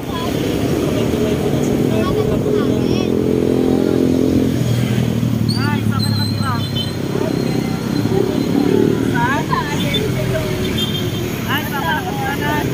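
A motor vehicle's engine running close by on the road, a steady hum that drops lower about halfway through, with people's voices over it.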